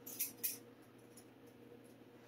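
A few light metallic clinks in the first half second, then quiet room tone with a faint steady hum.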